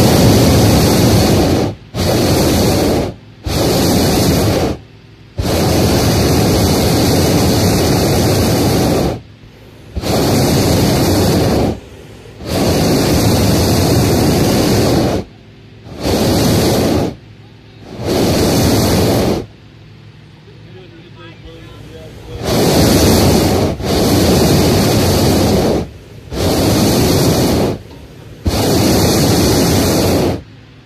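Hot air balloon propane burner firing in repeated blasts of one to four seconds, heating the envelope for lift-off, with a longer pause about two-thirds of the way through.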